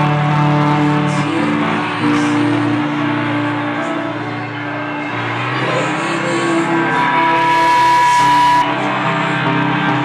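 Live rock band playing, led by guitar chords that are held and ring out, changing every few seconds.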